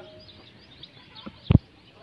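Birds chirping in the background, with one sharp knock about one and a half seconds in.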